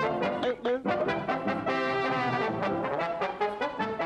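Jaunty brass music from an advert soundtrack: a run of short notes, then a chord held for about a second near the middle, then more short notes.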